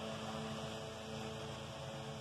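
Steady low electrical hum with a faint even hiss: quiet room tone with no other events.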